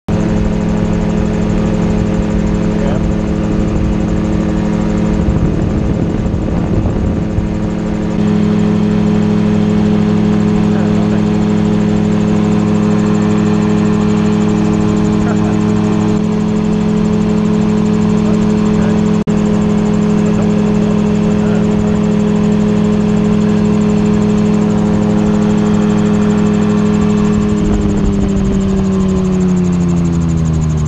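Magni M16 autogyro's engine and pusher propeller running steadily at cruise power in flight. Near the end the pitch falls away as the throttle is cut to idle for a simulated engine failure.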